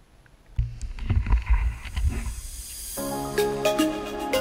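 Water sloshing and rumbling against an underwater camera's housing in a shallow tide pool, loud and uneven, starting about half a second in. Music with clear notes begins about three seconds in.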